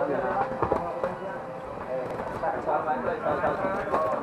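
Voices talking and calling out, with a few short dull knocks about a second in.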